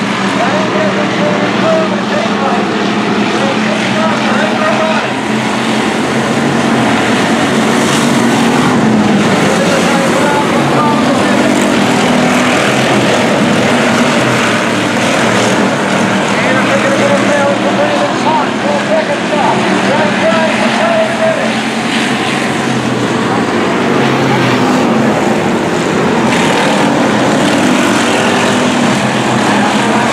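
A pack of hobby stock cars racing on a dirt oval: several engines running hard together in a loud, continuous din that swells and fades as the cars pass.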